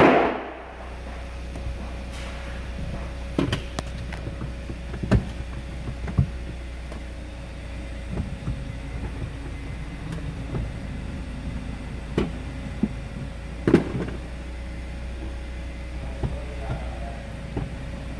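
2014 Hyundai Santa Fe's 2.4-litre four-cylinder idling, heard from inside the cabin as a steady low hum, while the gear selector is moved through park, reverse and neutral. A loud thump right at the start and several sharp clicks and knocks come over it.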